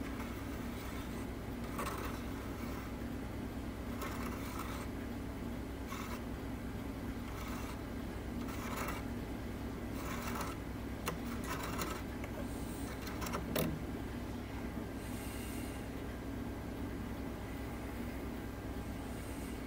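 Faint, short scraping strokes of a No. 11 hobby knife blade drawn along a brass model anchor chain, scraping at its dark oxidation coating from brass blackening, coming irregularly about every one to two seconds over a steady low hum.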